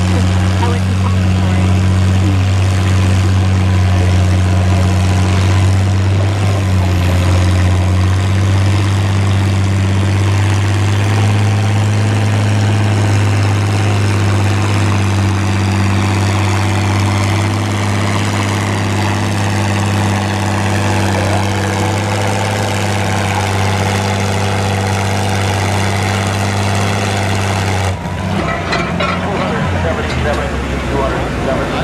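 International Harvester 460 tractor engine running steadily under heavy load while pulling a weight-transfer sled. About two seconds before the end, the engine note drops off suddenly as the pull ends.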